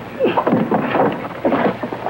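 A man's voice making short vocal sounds in quick broken bursts.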